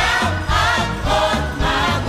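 Gospel choir music: a choir singing over an instrumental backing with a steady bass line.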